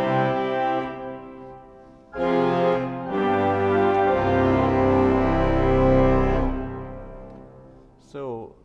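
Pipe organ playing full chords on its reed stops: a held chord that dies away about a second in, then a fresh run of chords from about two seconds in, with deep bass notes joining and the sound fading out in the room's reverberation near the end.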